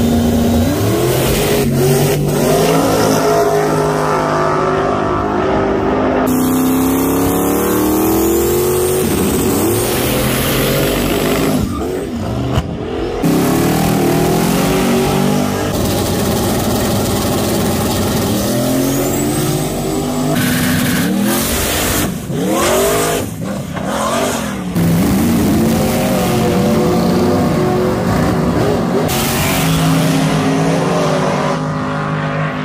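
Drag-racing cars launching hard down the strip, one run after another: their engines rev and rise in pitch as they pull away. The sound changes abruptly several times where clips are cut together.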